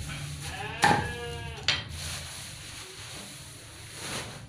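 A domestic sheep bleating once, a quavering call about a second long. Two sharp knocks fall during it, one about a second in and one as it ends.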